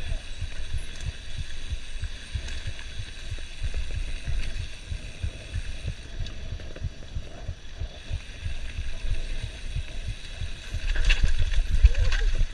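Mountain bike descending a rough dirt trail at speed: a jittery low rumble and knocking from the ground jolts carried through the camera mount, with wind noise. It gets louder and rougher near the end.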